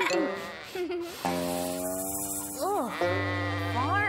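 Cartoon background music holding a sustained chord, with a cartoon sheep bleating twice in the second half, each bleat rising and falling in pitch.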